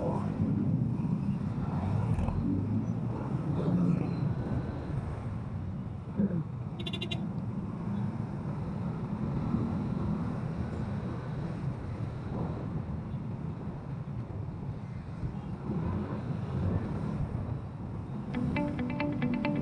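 Ride-along road noise from a Kymco SZ150 scooter creeping through congested motorcycle traffic: a steady low rumble of its engine and the surrounding motorbikes and cars that swells and eases. A brief high chirp sounds about seven seconds in.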